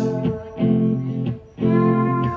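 Live band music with electric guitar: two strummed chords about a second apart, the sound dipping briefly just before the second.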